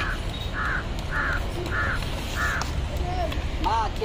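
A crow cawing over and over, about five caws a little more than half a second apart, which stop before three seconds in.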